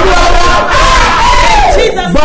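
Loud, impassioned shouting of several voices at once in fervent prayer, led by a man's strained cries, with no clear words; it dips briefly near the end.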